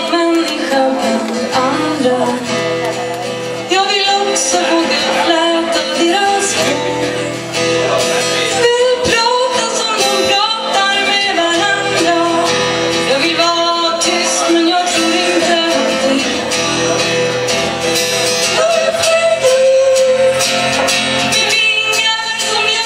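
A woman singing a slow, melancholy song to her own acoustic guitar accompaniment.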